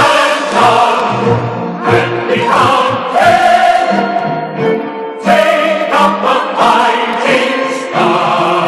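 Music: a choir singing in long held phrases.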